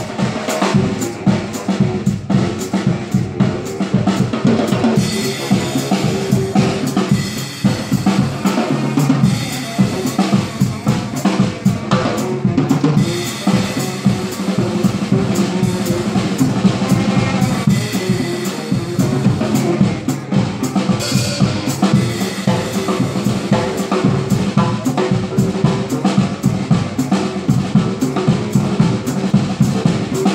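Live drum kit played with sticks in a fast, busy groove of bass drum, snare and cymbals, with a saxophone playing a melody over it.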